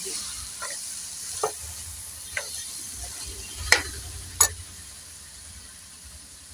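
Steel slotted ladle stirring minced mutton masala frying in an aluminium pot: a steady sizzle with a handful of sharp clicks of the ladle against the pot, the loudest about four seconds in.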